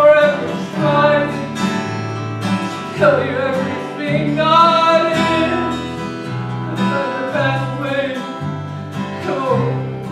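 Gospel song in a country style: a voice singing long, held notes over strummed acoustic guitar and a walking bass line.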